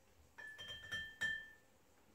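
Glass demijohn clinking and ringing as a plastic siphon tube knocks against it: three light clinks within about a second, the last the loudest, each leaving a short clear ring.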